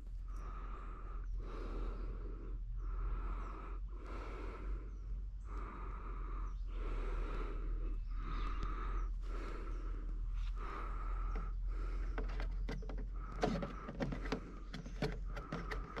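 A man breathing steadily through the nose close to the microphone, in even rising-and-falling cycles of roughly one breath every two and a half seconds, over a steady low hum.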